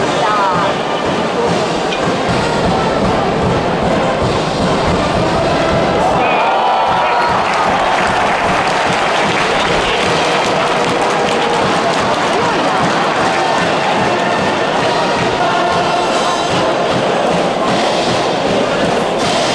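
Baseball stadium cheering section: a brass band playing with a large crowd singing and shouting along, loud and continuous.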